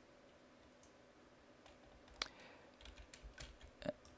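Near silence, broken by faint computer clicks from a keyboard or mouse: one sharp click about two seconds in and a few softer ones near the end.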